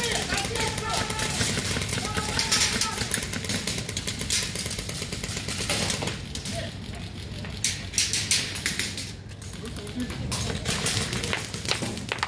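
Airsoft guns firing across the field: sharp clicking shots, some single and some in quick bursts, with players' voices calling out in the first few seconds.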